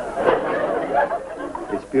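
Sitcom studio audience laughter mixed with a murmur of voices, picking up just after the start.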